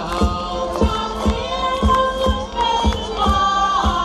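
Live group singing of a traditional Epiphany song (cantar os Reis), many voices together with instrumental accompaniment over a steady beat of about two strokes a second.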